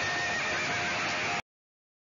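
A loud, noisy sound with a faint wavering tone in it, cut off abruptly about one and a half seconds in.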